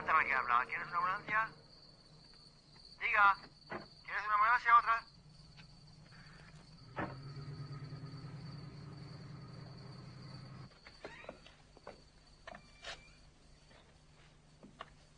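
Loud cries with a wavering, trembling pitch in three bursts over the first five seconds. A low steady hum follows for about four seconds, then a few faint clicks.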